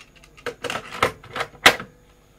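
Plastic cassette clicking and rattling as it is loaded into the open door of a Nakamichi cassette deck, a string of sharp knocks. The loudest clack comes near the end, as the cassette door is pushed shut.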